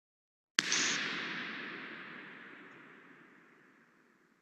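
Recorded impulse response of York Minster cathedral: a single sharp bang like a gunshot about half a second in, then a long hissing reverberant tail that fades away steadily over several seconds. It is the impulse bouncing off the cathedral's walls, with a reverberation time of about eight seconds.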